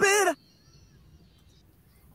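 Isolated rock lead vocal playing back: a male voice holds a high sung note that ends about a third of a second in. It leaves a very quiet stretch with a faint thin high tone.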